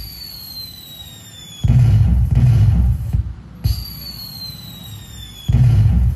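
Synthesized firework sound effect from a pixel-LED firework controller's sound output, played through a speaker. Twice, a falling whistle is followed by a deep boom with crackle, repeating about every four seconds in step with the light bursts.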